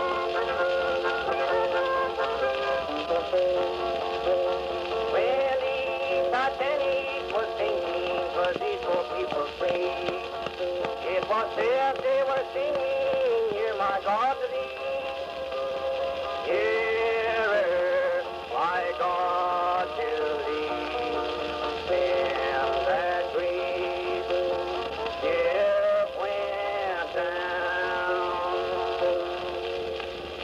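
Old-time country music played back from an Edison Blue Amberol cylinder record on a cylinder phonograph: an instrumental passage without singing, its lead notes sliding between pitches.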